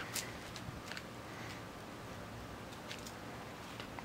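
Faint steady background hiss with a few light, scattered ticks; no clear source stands out.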